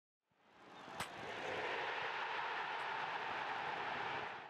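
Intro sound effect: a steady rushing noise that swells in over the first second and a half, with a sharp click about a second in, and begins to fade near the end.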